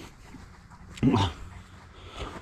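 A single short vocal sound from a Bernese Mountain Dog, a brief bark-like woof, about a second in.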